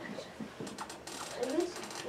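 A rapid run of small clicks, like a ratchet turning, from about half a second in to the end.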